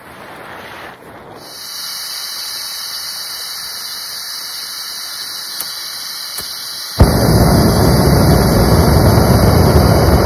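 Gas canister backpacking stove lit with a lighter about seven seconds in: a sharp pop as the gas catches, then the burner's loud, steady hiss. Before that there is only a steady high-pitched hiss with two small clicks.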